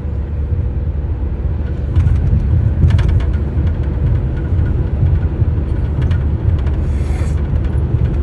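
Steady low rumble of road and engine noise inside a car cabin while driving at highway speed.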